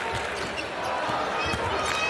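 Basketball dribbled on a hardwood court, several low bounces over the steady noise of an arena crowd.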